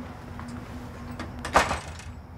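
A door moving: one short, scraping sound about one and a half seconds in, over a faint steady hum.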